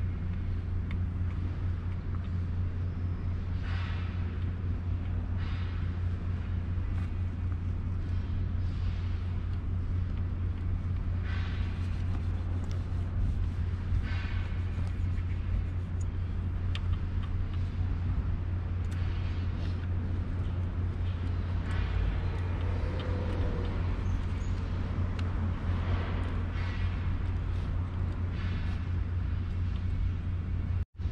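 A steady low rumble throughout, with short rubbing strokes of a dry cloth rag wiping a mountain bike's frame every few seconds.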